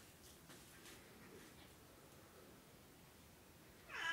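Near silence: room tone with a few faint, soft clicks in the first second and a half.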